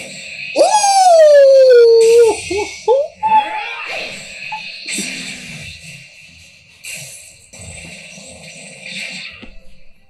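Anime episode soundtrack: a long, loud cry that falls in pitch about half a second in, followed by shorter cries and hissing sound effects over music.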